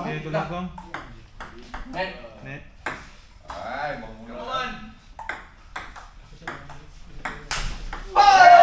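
Table tennis ball clicking back and forth off paddles and table in a rally, with a quick run of hits in the last couple of seconds. Voices call out between strokes.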